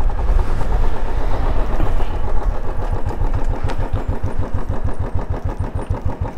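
Royal Enfield 350 single-cylinder engine running as the motorcycle slows, mixed with riding noise at first. From about halfway through, the engine settles into an even, low, pulsing beat at low revs as the bike rolls to a stop.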